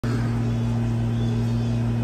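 Steady low electrical hum, two constant tones near 120 and 240 Hz, unchanging throughout.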